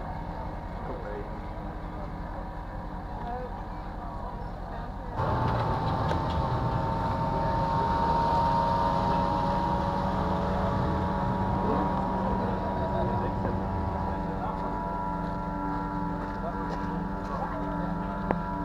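Racing powerboat engines running at high revs as the boats speed across the lake, a steady high-pitched engine drone. The sound gets suddenly louder about five seconds in.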